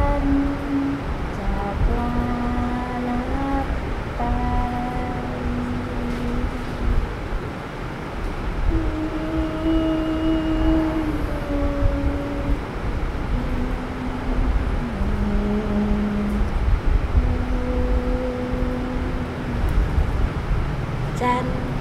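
A voice humming a slow, wordless tune of long held notes, each lasting a second or two, with a steady low rumble underneath.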